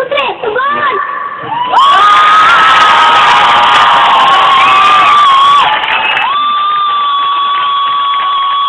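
A child's voice shouting into a microphone and coming through a loudspeaker, loud and distorted: a few short words, then two long drawn-out shouts, the first about four seconds long, the second starting about six seconds in.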